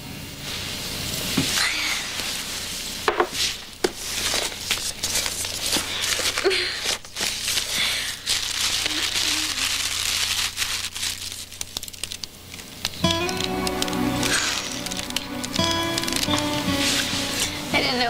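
Wrapping paper crinkling and tearing as a gift is unwrapped, a dense run of crackles and rustles. Soft background score plays underneath and swells about two-thirds of the way through.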